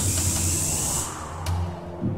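Suspense film-score music: a rising hissing swell that peaks and fades about a second in, over a steady low drone, with a single sharp hit near the end.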